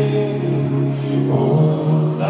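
Live band music at a concert: sustained low held notes that shift to a new pitch about one and a half seconds in.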